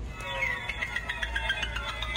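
Electronic sound effect from a furry hanging Halloween animatronic set off by its try-me button: a high, crackly, many-toned sound that starts a moment in and slides down in pitch.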